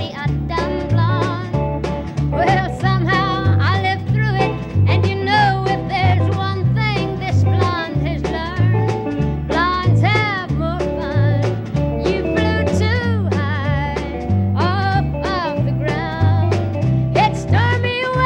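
A woman sings a country song with a wavering vibrato, backed by a small country band with guitar. A bass line steps between notes about twice a second.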